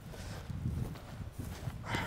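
Footsteps through grass, with irregular low rumbling on the microphone from the handheld walk.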